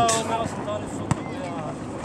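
A man's voice trails off in the first half second, then steady background noise with a single sharp knock about a second in.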